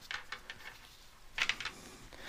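Faint handling noise of fingers working a string through a small metal wire loop: a few soft clicks and rustles, with a short cluster of them about a second and a half in.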